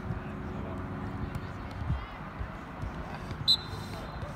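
Distant voices of soccer players calling out across an open field, over a low rumble on the microphone. A short, sharp high-pitched blip sounds about three and a half seconds in.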